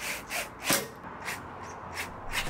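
Plastic line-set cover on a mini-split outdoor unit being handled and pressed into place: a handful of short scrapes and knocks, plastic rubbing on plastic.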